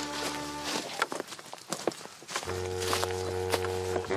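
Several people's footsteps crunching through dry leaf litter on a forest floor. Background music plays long held notes, which drop out briefly in the middle and come back for the last second and a half.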